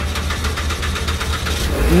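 A car's engine being cranked by its starter: a rapid, even clatter of about ten clicks a second over a low rumble, stopping near the end.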